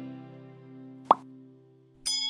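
A held music chord fading out, with a single short, sharp pop about a second in, a button-click sound effect.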